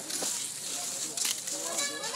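Background chatter of onlookers' voices over a steady hiss, with one sharp click a little past the middle.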